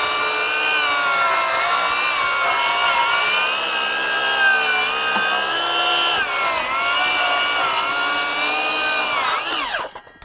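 DeWalt DCS570 20V 7-1/4-inch cordless circular saw, fitted with a thick-kerf blade, ripping along a pine board. Its motor whine dips in pitch a couple of times under load. Near the end the saw is released and winds down with a falling pitch.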